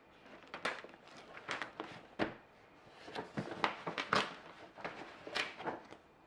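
Paper rustling as the pages of a thick instruction manual are leafed through and a printed leaflet is pulled out, in a string of irregular swishes and crinkles.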